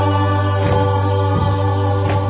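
Church praise band and singers performing a gospel worship song: voices holding long notes over the band, with a soft beat about every 0.7 seconds.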